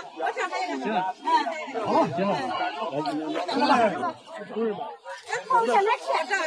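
Several people talking at once in Mandarin: overlapping, animated chatter of a small group.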